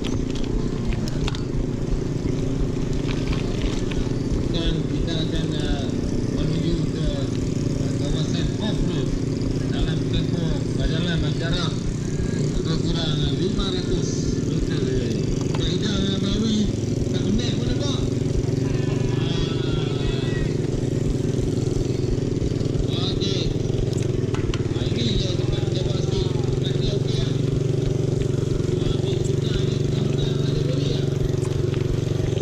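Off-road vehicle engine running steadily at low revs, with voices talking over it.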